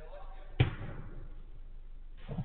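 A single sharp thud of a football being hit, a little over half a second in, with a brief echo after it, over faint voices.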